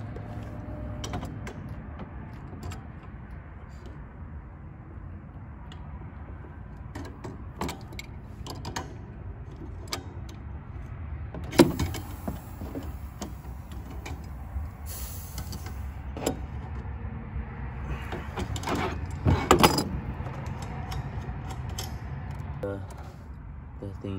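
Clicks and metallic knocks of hands working the valve, gauge and line fitting of a nitrous bottle in a truck bed, over a steady low rumble. The sharpest knocks come about twelve seconds in and again just before twenty seconds. A short high hiss is heard twice in between.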